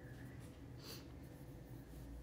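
Quiet room tone with a low steady hum and one short, soft hiss about a second in.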